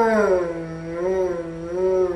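A man's voice holding one long wordless vocal sound, its pitch dipping and then wavering slowly, with no breaks into words.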